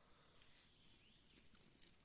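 Near silence: faint outdoor background with a few barely audible ticks.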